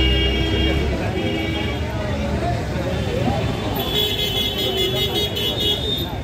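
Vehicle horns honking in street traffic: a honk of about a second, a shorter one just after, then a longer, steady honk from about four seconds in. A crowd's chatter runs underneath.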